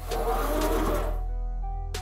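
Background music with held tones, overlaid at the start by a whoosh transition sound effect that swells and fades out within about a second.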